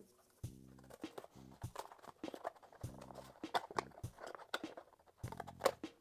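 Scissors snipping through thin cardboard in a string of quiet, irregular cuts, over faint background music with soft held notes.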